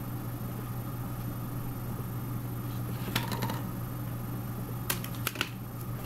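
Scissors cutting through a flattened, taped paper tube: a few crisp snips about three seconds in and again near the end, over a steady low hum.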